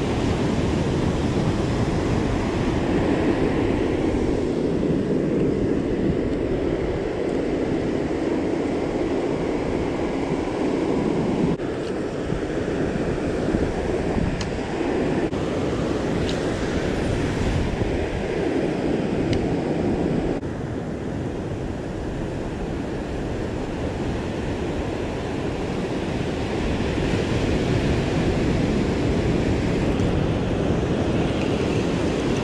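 Ocean surf breaking and washing up a sandy beach in a steady, even rush, with some wind on the microphone.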